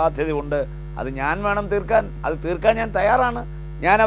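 A man talking in Malayalam over a steady, low electrical hum.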